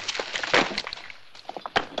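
Irregular short knocks and clatters of rocks being handled on a rock pile, with a louder knock about half a second in and a few sharp ones near the end.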